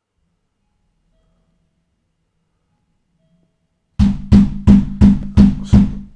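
Six loud knocks on the back door in quick succession, about three a second, beginning about four seconds in.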